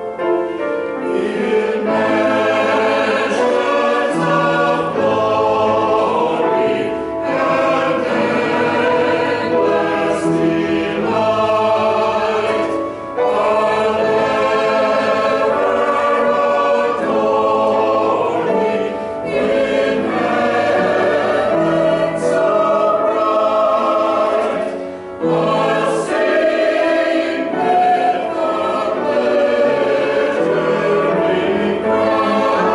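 Mixed church choir of men's and women's voices singing together, in long held phrases with short breaks between them.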